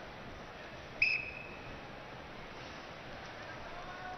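Wrestling referee's whistle blown once, a short shrill blast about a second in, signalling the start of the next period of the bout, over a low arena crowd murmur.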